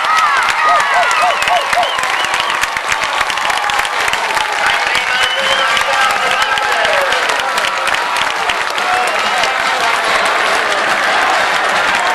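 A crowd in the stands cheering and clapping, with shouts rising above it, several in quick succession near the start.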